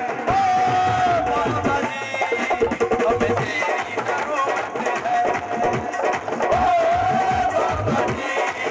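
Live devotional bhajan music: a melody with a few long held notes over a steady beat of dholak and dhol drums, played through a PA system.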